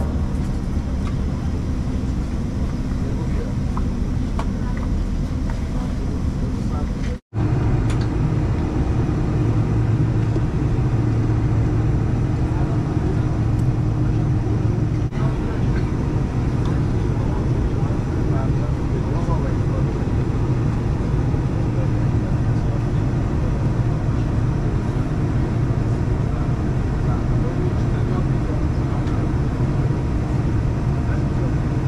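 Cabin noise of a Boeing 747-400 taxiing: a steady engine hum carried through the fuselage. The sound cuts out for an instant about seven seconds in, then resumes a little louder with a steady low drone.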